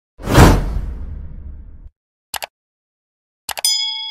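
Subscribe-button animation sound effects: a loud whoosh with a low boom that dies away, two quick mouse clicks, then another click and a ringing bell ding near the end.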